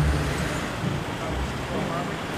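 Street traffic noise: a steady low engine rumble from road vehicles, with faint voices of passers-by.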